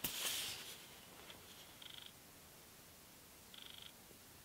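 A brief faint rustle of handling as a laptop is moved, then two short, faint buzzes with a fast flutter, one about two seconds in and one near the end.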